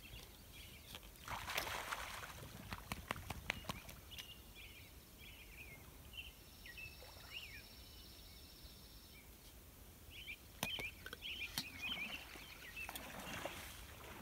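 Faint sloshing and splashing of water as a moose wades in a shallow lake, swelling about a second in and again near the end, with a few short high bird chirps in between.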